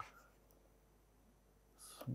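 Near silence: one faint click of a stylus on the writing tablet at the start, and a short in-breath near the end.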